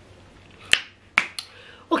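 Sharp snap-like clicks made by a person: two clear ones about half a second apart, then a fainter third just after, in a quiet room.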